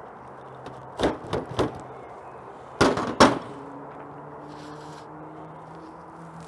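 A knife cutting through a freshly baked, crisp-crusted pizza on a board. There are sharp chops: three about a second in and two more near the middle.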